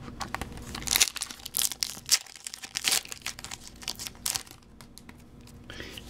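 Foil Pokémon booster pack wrapper crinkling and tearing as it is opened by hand: a run of sharp crackles that thins out about four and a half seconds in.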